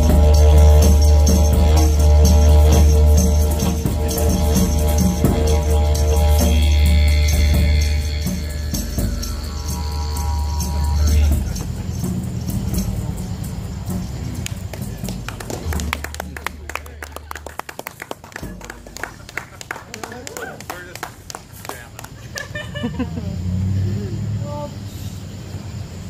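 Didgeridoo drone under flute and djembe strokes, the flute line gliding down as the piece ends about eleven seconds in. After that comes a quieter stretch of scattered sharp claps or clicks, with laughter near the end.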